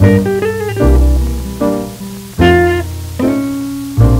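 A 1940s rhythm-and-blues ballad playing from a 78 rpm shellac record on a turntable. This is an instrumental break with no singing: held single notes over a bass line.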